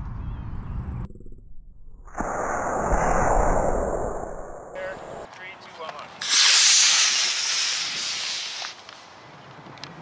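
Model rocket motor igniting and burning with a loud rushing hiss for about two and a half seconds, starting a little past halfway and then dying away. Earlier, a duller rush of noise is cut off abruptly.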